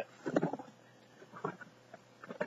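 Faint rustling and light knocks of a cardboard box's contents being felt through by hand, in two short clusters, one at the start and one about a second and a half in.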